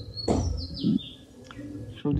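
Bird chirping: a quick run of high chirps that step down in pitch during the first second, then fainter.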